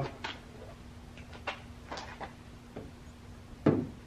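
A few scattered knocks and clunks, with one louder thump near the end, over a faint steady hum.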